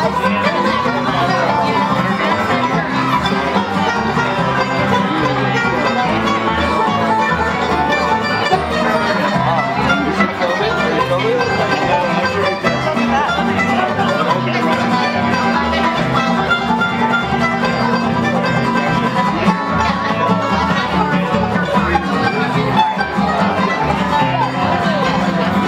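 Bluegrass played live on two acoustic guitars and a banjo, picking together without a break.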